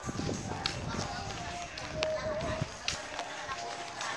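Footsteps walking on a concrete street, with several sharp clicks and indistinct voices in the background.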